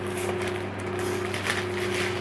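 Electric fan humming steadily, with a few light crackles of a clear plastic packaging bag being handled.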